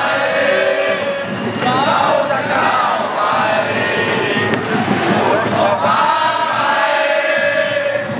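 Crowd of football supporters chanting and singing together, many voices at once, loud and steady throughout.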